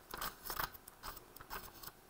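Thin pages of a thick code book being flipped quickly, an irregular run of soft paper flicks and rustles.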